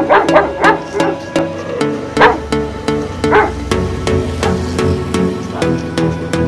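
Background music with a steady beat, over which a puppy yips: three quick yips at the start, then single yips about two and three and a half seconds in.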